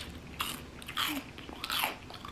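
Fried chicken's crispy coating crunching as it is bitten and chewed, several crisp crunches spread across the moment.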